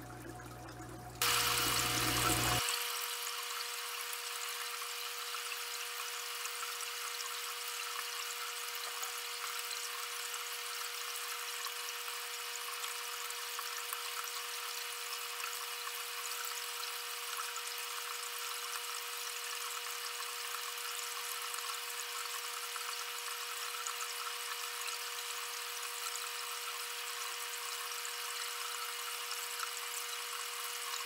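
Small motor of an aquarium gravel vacuum running steadily as it pulls mulm and water from the tank bottom: a constant high whine over an even hiss, starting about a second in.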